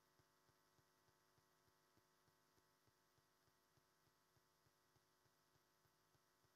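Near silence: the sound track is all but muted.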